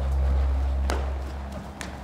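A low steady rumble with two faint knocks about a second apart: hoofbeats of a horse trotting on the sand footing of an indoor arena.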